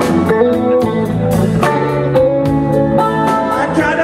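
Live rock band playing an instrumental passage: electric guitars over bass and drums, with a steady drum beat.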